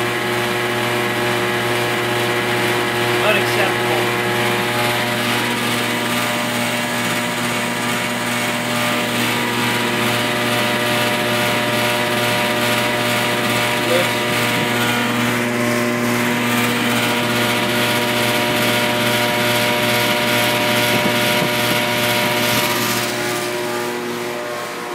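Armstrong Magic-Pak heat pump running: a steady, very loud mechanical hum and rush with several constant tones, holding at 92 dB on a sound level meter close to the unit.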